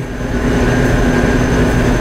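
Steady machine hum with a low, even buzz from the running electron-beam evaporator system and its support equipment while the beam is on.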